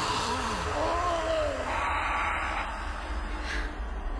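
A woman's gasp and wavering wordless vocal sounds over a steady low rumble, from a horror film's soundtrack.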